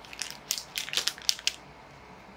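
Plastic wrapper of a small cheese biscuit packet crinkling as it is handled, a string of short sharp crackles over about a second and a half.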